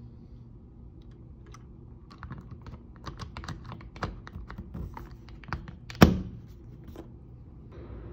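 Clicks and light taps of an August smart lock body being fitted onto its mounting plate, several a second, with one loud snap about six seconds in as it is pressed into place.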